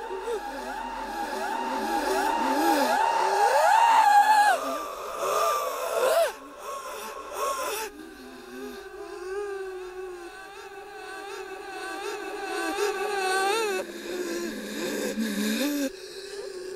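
Instrumental electronic music built from layered tones sliding up and down, with no beat. The tones swell to a peak about four seconds in and fall away near six seconds. From about eight seconds a quieter layer of wobbling, warbling tones takes over.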